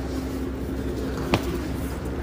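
Steady low background hum of indoor ambience, with a single sharp click a little past halfway.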